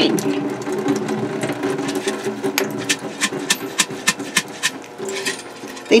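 Rinse water pouring out of an upturned mason jar through a plastic strainer lid into a stainless steel sink, thinning to scattered drips and clicks over the last few seconds. A steady low hum runs underneath.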